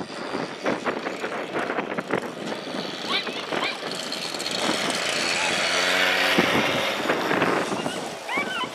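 A dog-track lure machine's motor runs as a racing sighthound is released, with rattling clicks in the first couple of seconds and people shouting and calling.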